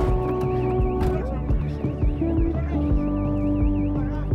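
A car alarm's fast warbling siren over background music with long held notes and a low beat; the siren is faint at first and comes through plainly in the last second or so.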